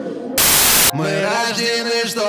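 A loud half-second burst of static noise, an editing transition effect, followed about a second in by background music starting.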